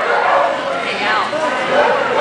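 A dog yipping and barking in short, repeated calls, with people talking in the background.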